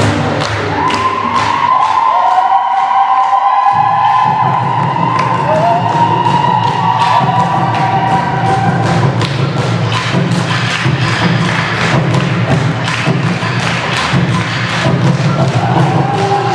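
Dance music with singing voices over a steady drum beat. The deep bass drops out about two seconds in and comes back just before four seconds.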